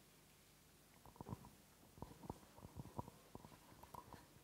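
Near silence, broken from about a second in by faint, scattered knocks and rustles.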